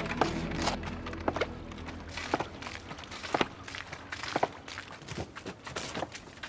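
Hand-worked wooden two-piston force pump built to a Roman design being pumped, its beam and pistons knocking about once a second as it forces water out of the spout. Background music runs underneath.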